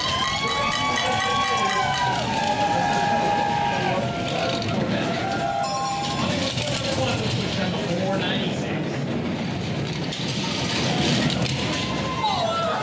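Spectators cheering as the two-man bobsled pulls away from the start. This gives way to the steady rumble of the sled's runners on the ice as it speeds down the track.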